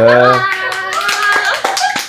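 Hands clapping in a quick run of short claps, starting about half a second in, over an excited voice.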